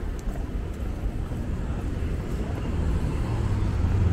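Low, steady rumble of city traffic, swelling toward the end.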